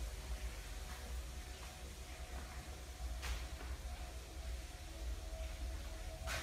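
Quiet background hum with a faint steady tone and a single faint click about three seconds in.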